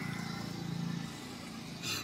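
A vehicle engine running: a faint, steady low hum that swells a little and then eases off.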